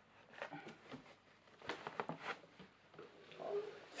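Cardboard packaging scraping and rustling as a cardboard box is worked off a plastic-wrapped case, in a few short, faint bursts.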